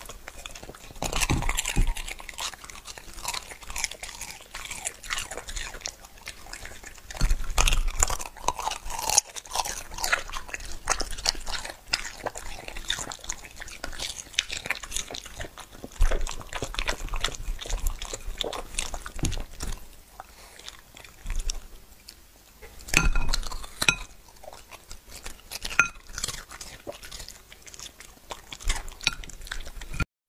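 A dog eating from a plate close to the microphone: wet licking and lapping, mixed with chewing and crunching of quail eggs and blueberries, in irregular runs of sharp clicks with louder bursts now and then.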